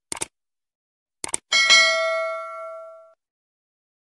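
Subscribe-button animation sound effects: a quick double mouse click just after the start, another double click about a second later, then a notification bell ding that rings out and fades over about a second and a half.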